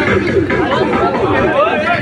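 Several people talking at once, voices overlapping into chatter with no single clear speaker.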